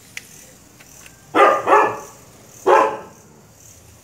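A dog barking three times: two quick barks, then a third about a second later.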